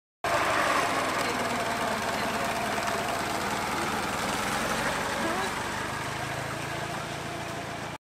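Engine of a Ford Model T touring car running steadily as the car moves slowly off, a fast, even train of firing pulses, with people talking nearby.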